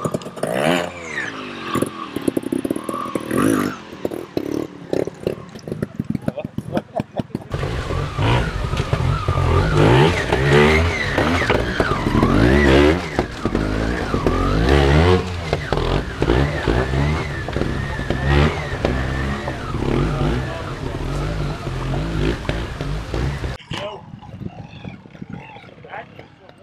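Trials motorcycle engine revving in bursts, its pitch rising and falling, with voices of people around it. About seven seconds in, the sound turns louder with a heavy low rumble. Near the end it cuts to a quieter background.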